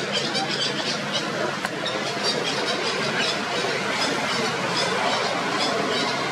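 Short high-pitched animal squeals, repeating several times a second over a steady background din.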